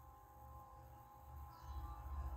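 Faint ambient meditation music: soft held tones over a low drone that swells near the end.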